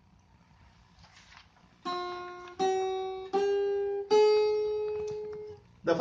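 Four single notes picked one after another on the first (high E) string of an f-hole archtop guitar, fingered on frets one to four, each a semitone higher than the last: a slow chromatic exercise. The fourth note rings on for over a second before fading.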